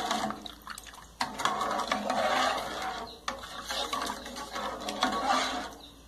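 Metal spoon stirring a thin liquid corn mixture in a metal pan: the liquid sloshes while the spoon scrapes and clicks against the pan.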